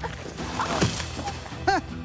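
A person shoved down onto a pile of plastic garbage bags: a rushing, rustling crash with a hit about a second in, followed by a short cry. Background music runs underneath.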